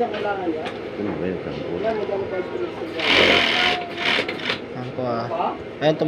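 Pegasus W500 industrial sewing machine running and stitching piping on fabric during a test run after its needle has been timed to the looper.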